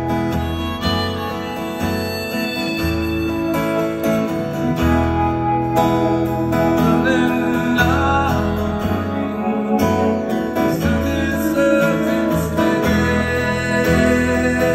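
Live band music: strummed acoustic guitar with keyboard and bass in a slow song, with a melodic lead line gliding over the chords partway through.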